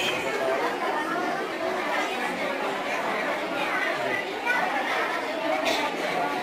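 Indistinct chatter of many voices talking over one another in a room full of schoolchildren.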